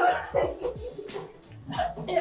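Background music with a low, repeating bass beat, with short sharp vocal bursts over it.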